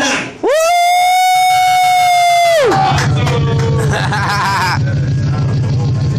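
A man's voice through the microphone and speakers holds one long shouted note for about two seconds. It swoops up at the start and drops off at the end. A hip-hop beat with a steady bass line runs under it and carries on afterwards.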